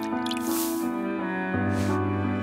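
Background music with a dripping, splashy liquid sound effect as a small bottle is emptied into a glass of water, in two short spurts.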